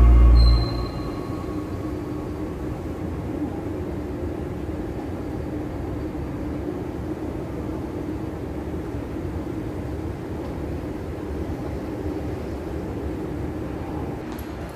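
Escalator running: a steady mechanical hum with an even drone and no change in level.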